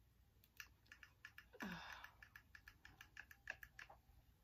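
Faint, irregular small clicks and crackles from hair held in a hot curling iron coated with heat protectant, with a short breathy hiss about one and a half seconds in.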